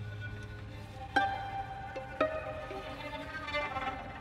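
String quartet of two violins, viola and cello playing a quiet passage: a low held note fades, then two sharply attacked higher notes ring on, about one and two seconds in.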